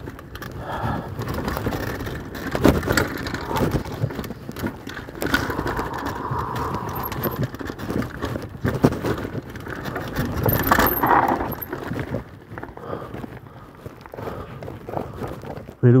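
Mountain bike rattling down a rough dirt trail: irregular clatter and knocks from the chain and bike parts over the bumps, with tyre and wind noise. It goes quieter for the last few seconds as the riding eases off.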